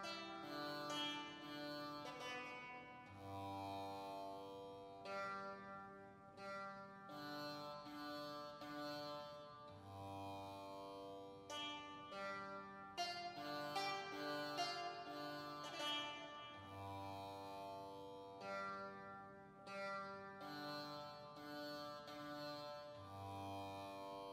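Medieval bray harp playing, the buzzing pins on its strings giving a sitar-like twang. Plucked notes ring on over a low note that comes back every six or seven seconds.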